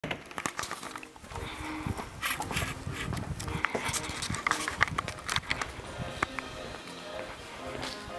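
Irregular knocks and rustling handling noise from a handheld camera carried at a walk, with music and voices in the background.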